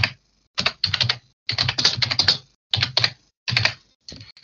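Typing on a computer keyboard, heard over a video call: several short runs of quick keystrokes separated by brief silent gaps.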